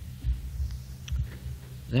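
Steady low electrical hum with several soft low thumps under it: the background noise of an old lecture tape recording during a pause in speech, with a man's voice starting again right at the end.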